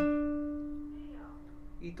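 A single note plucked on a classical guitar: the third (G) string at the seventh fret, a D, struck once and left ringing, dying away slowly for nearly two seconds.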